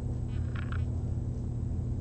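Steady low room hum, with a brief faint higher sound about half a second in.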